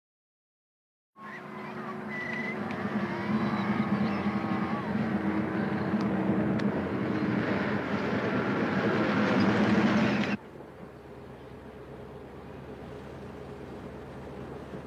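Old bus driving along, its engine running with a steady low drone. It starts after about a second of silence and drops suddenly to a quieter steady rumble about ten seconds in.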